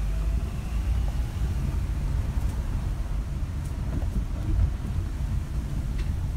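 Low, steady rumble of a car driving, engine and road noise heard from inside the cabin.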